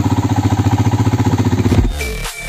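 Motorcycle engine idling with an even, fast putter. Electronic music cuts in near the end.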